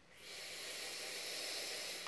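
Steady hiss of a drag on a sub-ohm vape, lasting nearly two seconds: air pulled through the tank's wide-open airflow over an Eleaf EC coil head as it fires at about 40 watts.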